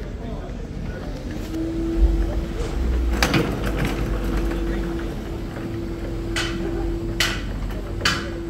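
Car service shop background: a steady droning tone that sets in about a second and a half in, a low rumble, sharp metallic clanks about three seconds in and twice more near the end, and voices in the background.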